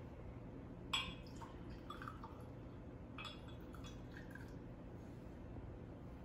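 Tequila poured faintly from a glass bottle into a small measuring glass, with a light glass clink about a second in and a few soft taps.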